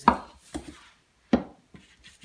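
Two sharp knocks about a second apart, with a lighter tap between them, as hard items are handled and set down.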